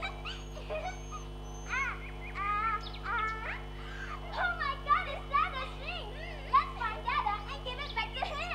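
Young voices calling out in many short, high, rising-and-falling cries without words, over a steady low hum from the sound system.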